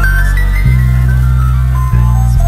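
Boom bap hip hop instrumental in the 90s style: a deep, heavy bass line under a sampled melody that climbs in pitch. The bass changes note about two thirds of a second in and again near the end.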